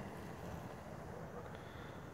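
Faint, steady, low background noise with no distinct sound event.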